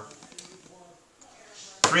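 A quiet room with a few faint ticks and rustles from a hand-held whiteboard being handled. Near the end a man starts speaking.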